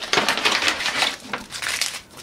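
Paper and foil packaging of a chocolate bar crinkling and rustling in the hands as the foil-wrapped bar is pulled out of its cardboard box, in quick irregular crackles.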